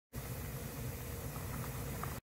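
A pot of spicy beef soup boiling hard: a steady bubbling rumble, with a few faint pops in the second half.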